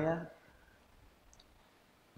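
A man's voice trails off in the first moment, then near silence: room tone with a couple of faint, brief clicks.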